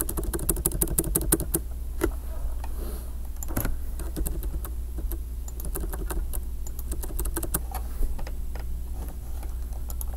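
Typing on a computer keyboard: a fast run of keystrokes in the first second and a half, then scattered single keystrokes, over a steady low hum.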